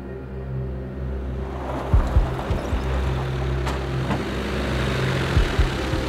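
Background music with steady low tones, under a Hyundai van driving up, its engine and tyre noise growing louder from about a second and a half in.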